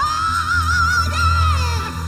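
A female gospel-soul singer swoops up into a long high held note with wide vibrato, letting it fall away near the end, over a live band's sustained low chords.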